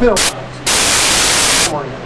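A burst of steady, loud static-like hiss lasting about a second, starting and stopping abruptly, just after a brief snatch of speech.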